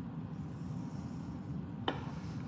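A steady low hum with no speech over it, and a single sharp click near the end.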